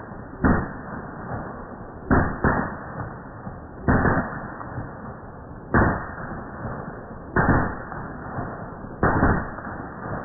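Rifle gunshots, single shots fired at an irregular pace from two rifles, one a bullpup carbine. There are about eight shots, spaced one to two seconds apart with a couple of quick pairs, each with a short echo after it.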